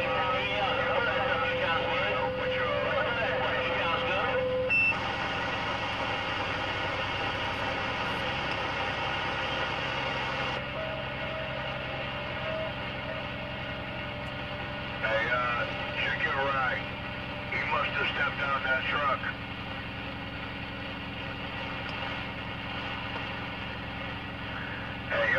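CB radio receiver on channel 19 passing open-channel noise with faint, garbled voices that come and go, and a steady whistle tone for the first few seconds and again briefly near the middle; the noise changes abruptly twice as signals drop in and out.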